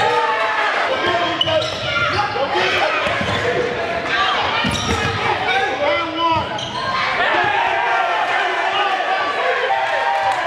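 Basketball bouncing on a hardwood gym floor, with several sharp thuds, under constant overlapping shouts and voices of players and spectators in a large echoing gym.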